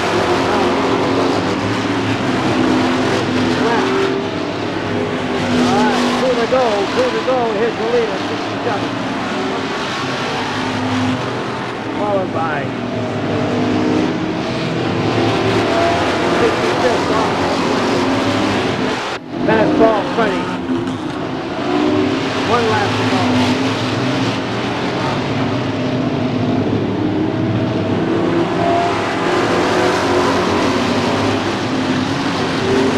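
Stock car engines racing around a short oval track, pitch rising and falling as cars pass one after another. The sound drops out for a moment about two-thirds of the way through.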